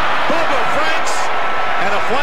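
Football television broadcast sound: a steady stadium crowd noise with voices rising and falling over it.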